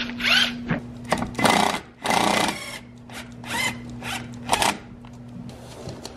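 Cordless screwdriver run in about five short bursts, its small motor whining up to speed each time.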